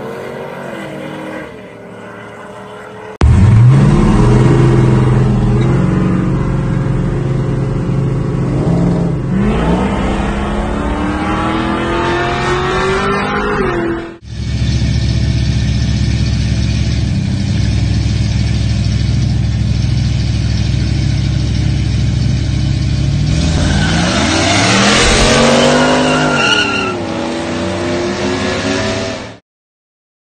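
Drag-racing cars' and trucks' engines accelerating hard in a few edited clips, the pitch climbing during each pull, with a long stretch of loud, steady engine noise in the middle. The sound stops abruptly just before the end.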